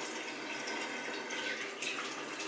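Bathroom sink faucet running steadily as water is splashed onto the face to rinse off cleanser.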